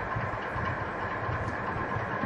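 Steady background room tone: a low hum with hiss, picked up through the podium microphone.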